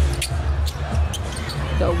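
A basketball dribbled on a hardwood court, bouncing about twice a second over a steady low hum.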